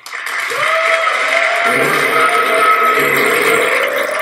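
Keynote audience applauding steadily with music underneath as a presenter is called on stage.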